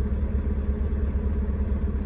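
Tractor-trailer's diesel engine idling, a steady low rumble heard inside the cab.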